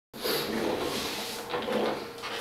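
Shuffling and soft knocks of a person moving back into place with a plugged-in electric guitar, a steady hum underneath.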